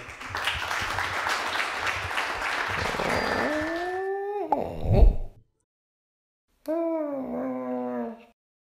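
Audience applause for about three seconds. Then a cartoon cat-like yowl with a rising pitch, a sharp thud about five seconds in (the loudest sound), a second of silence, and a second yowl that drops in pitch and holds.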